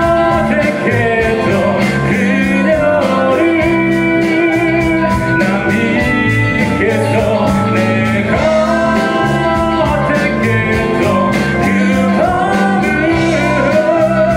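Live rock band playing a song: a male lead vocal sung over electric guitar, bass guitar, drum kit and keyboards, with a steady drum beat.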